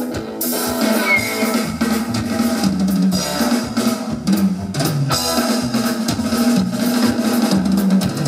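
Live psychobilly band playing the instrumental opening of a song: a drum kit keeps a steady beat on bass drum and snare under a moving upright bass line and electric guitar.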